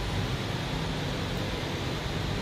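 Steady background hiss with a low rumble: shop room tone.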